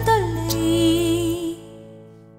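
A woman's singing voice holding a long note with vibrato over soft backing music; about one and a half seconds in the bass and accompaniment stop and the sound dies away as the song ends.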